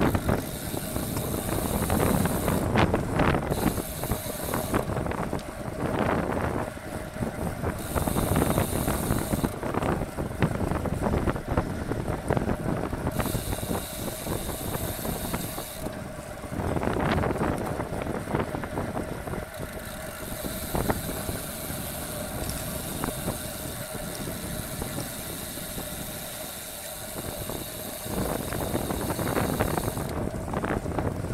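Wind rushing over a bicycle-mounted camera's microphone, with road-bike tyre and drivetrain noise, while riding at about 40 km/h. The wind noise swells and fades every few seconds.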